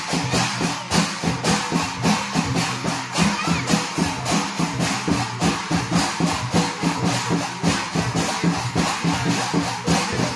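Folk drumming on a laced barrel-shaped hand drum (madal), with small hand cymbals, played in a fast, even beat.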